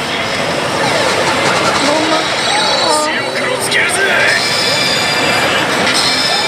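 Pachislot hall din: a loud, steady wash of many slot machines' electronic sounds and music, with the near machine's own sound effects and voices over it as its screen plays a 7-alignment effect.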